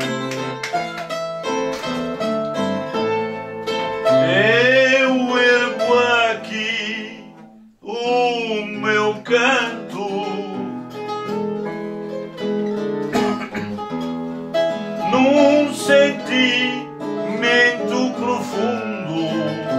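A man singing an improvised Azorean cantoria verse in long, sliding sung lines over a plucked accompaniment of acoustic guitar and a pear-shaped string instrument. Voice and instruments drop out briefly just before the middle, then resume.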